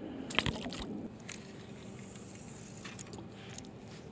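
Fishing tackle handled as the hook is readied and the rod cast. A quick run of clicks and rustles comes about half a second in, then a few lighter single clicks.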